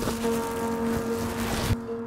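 Crinkling and rustling of a thin plastic emergency bivvy bag being pulled on and handled, over a steady background music drone; the rustling stops abruptly near the end.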